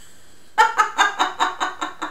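A woman laughing: a quick run of short "ha" sounds, about six a second, starting about half a second in and trailing off.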